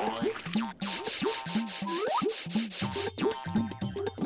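A fast, rasping scrub-and-rub sound effect of soap being worked vigorously for about two seconds in the middle. It plays over bouncy cartoon background music with a steady bass beat. A short rising whistle-like glide sounds near the middle.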